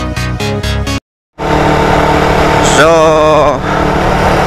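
Electronic dance music with a steady beat cuts off about a second in; after a brief silence, the sound of a motorcycle being ridden comes in: a steady engine hum under loud wind rush on the onboard microphone, with a voice briefly about three seconds in.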